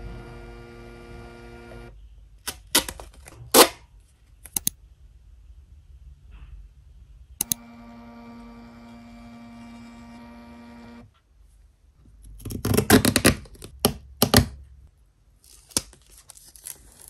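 Mini thermal printer whirring as its motor feeds the paper out, once at the start and again from about seven and a half to eleven seconds in, with a few sharp clicks in between. Near the end there is loud crinkling and rustling as the thin printed sheet is handled.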